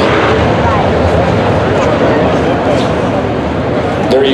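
A field of dirt-track modified race cars running together on the track, a loud, steady engine noise with no single car standing out.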